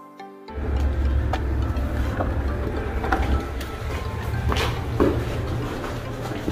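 Background music continues as live sound comes in about half a second in: a steady low rumble and a series of clicks and knocks while a glass entrance door is pushed open.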